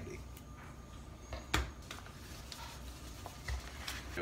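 Quiet handling of a roll of adhesive carbon fiber vinyl film and an exacto knife on a plastic cutting mat: light rustles and a few short clicks, with one louder knock about one and a half seconds in.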